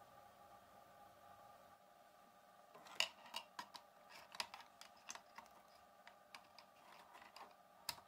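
Irregular light clicks and taps of a perfboard and its wires being handled and fitted onto an Arduino Mega board, starting about three seconds in. Before that, near silence with a faint steady hum.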